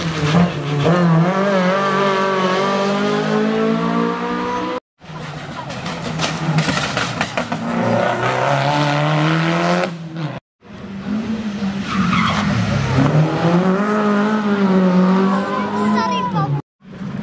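Rally cars driven hard through a tight corner, in three short segments cut together: an old Škoda rally saloon, then a Subaru Impreza, then another car. In each the engine note climbs as the car accelerates out of the corner, with tyre noise on the tarmac.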